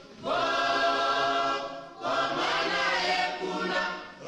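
A group of men singing together as a choir, in two held phrases with a short break for breath about halfway through.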